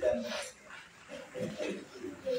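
A man's voice making short wordless vocal sounds: a brief utterance at the start and another about a second and a half in, with quiet between.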